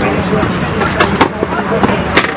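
Steady airliner cabin hum with people talking, and two sharp clicks about a second in as a plastic seat tray table is handled.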